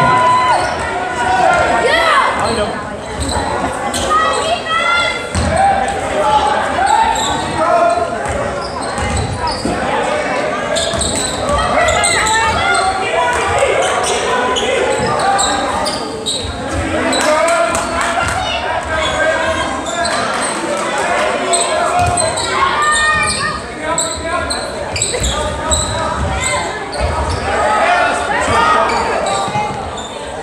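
Basketball bouncing on a gym floor during play, amid a crowd's overlapping voices and shouts in a large, echoing gymnasium.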